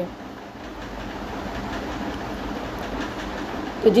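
Steady background hiss with no distinct events, growing slightly louder.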